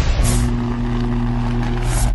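Sound effects for an animated logo intro: a loud rushing noise with a steady low hum under it, and a bright swish near the start and another near the end.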